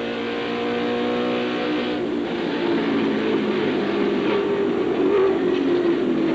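In-car audio of a NASCAR All-Pro stock car's V8 engine at racing speed. The engine note holds steady for about two seconds, then dips and rises as the car goes through the banked turns.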